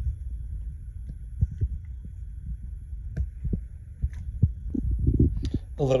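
A ladle knocking and scraping in a stainless steel pot of chili as it is served, with scattered light clicks and dull thumps over a low handling rumble.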